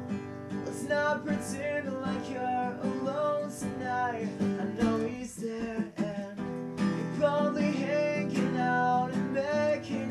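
Acoustic guitar strummed steadily with a young man singing over it, recorded through a webcam microphone.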